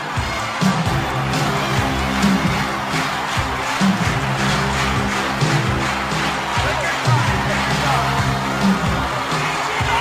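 Music with sustained low chords and a steady beat.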